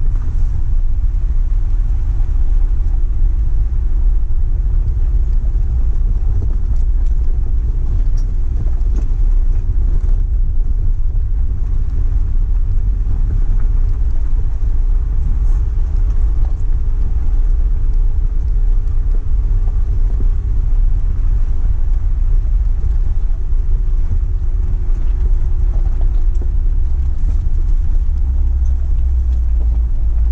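Four-wheel-drive vehicle's engine running at low speed on a gravel trail climb, a heavy steady low rumble. The engine note rises slowly through the middle and then eases back.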